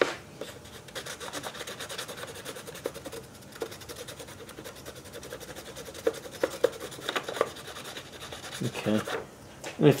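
Pencil lead scratching quickly back and forth over a sheet of paper held on the engine's gasket face, a fast run of short scratchy strokes with a few louder ticks. It is taking a rubbing of the gasket surface's edge and bolt holes to make a gasket template.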